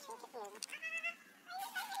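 Infant macaque crying: a string of short, wavering squeals that rise and fall in pitch, with a higher-pitched cry about a second in.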